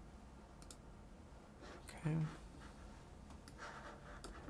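A few faint, sharp clicks, two close together early on and a couple more near the end, in a quiet room.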